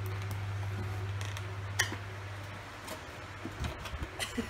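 A few small clicks and taps from handling a ceramic mug and a cardboard gift box, the sharpest about two seconds in, over a steady low hum.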